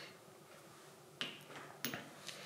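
Small metal parts clicking as the pin and washer are fitted into a Coats M-76 wheel balancer head: a few short, sharp clicks in the second half, otherwise quiet.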